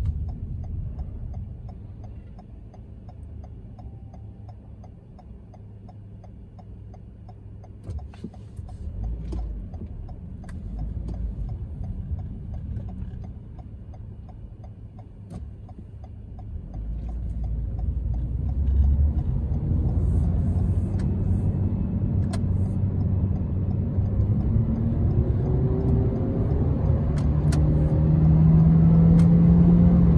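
Inside the cabin of a 2020 Toyota Corolla, a low engine and road rumble, quiet at first while the car waits and moves slowly. From about halfway it grows steadily louder as the car pulls away and speeds up, with the engine's drone rising in pitch near the end.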